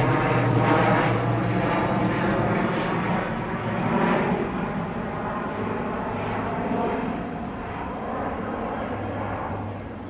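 A steady engine drone, loudest at first and slowly fading away.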